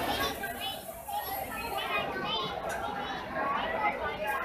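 Background chatter of many voices, children's among them, in a busy crowd.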